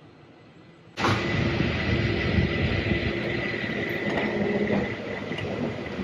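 Street traffic with a motor vehicle engine running close by, cutting in suddenly about a second in and carrying a steady high whine.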